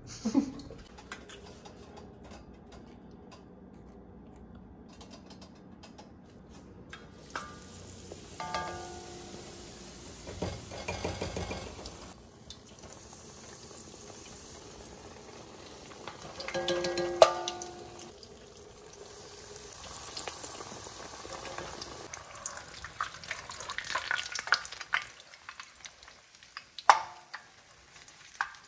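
Batter-coated Oreos deep-frying in hot vegetable oil: a steady sizzle that starts about a quarter of the way in and goes on, with occasional clicks of metal tongs against the pan and bowl.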